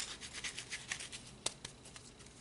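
Soft rustling of a deck of tarot cards being handled, with one sharper click about one and a half seconds in.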